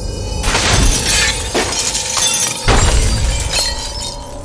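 Glass shattering in several crashes, about a second apart, over a film score.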